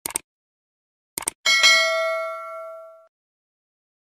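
Subscribe-button animation sound effect: a quick double mouse click, then about a second later more clicks and a bright bell ding that rings out and fades over about a second and a half.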